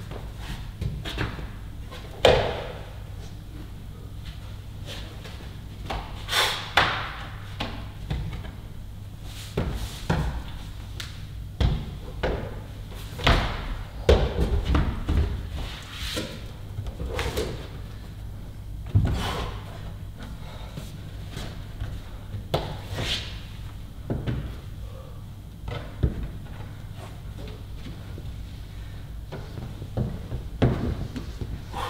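A climber's hands and climbing shoes hitting and slapping the holds of an overhanging bouldering wall: irregular sharp knocks and thuds, the hardest about two seconds in and around the middle, over a steady low hum.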